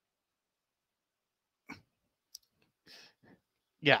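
Dead silence, then in the second half a few faint short clicks and a soft breath, with a man's voice saying "yeah" at the very end.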